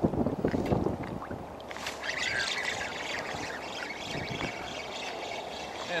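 Wind gusting on the microphone, loudest in the first second, over small waves lapping and trickling in shallow water.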